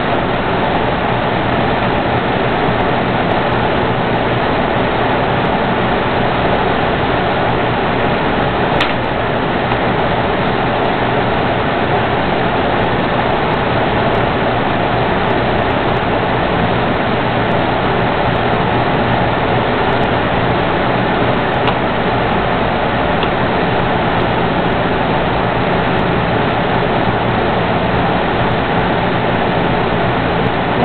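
Steady rushing noise with a faint low hum, even in level, with one brief click about nine seconds in.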